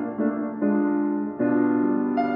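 Steinway concert grand piano playing a slow, calm nocturne: sustained chords that change about every half second to second.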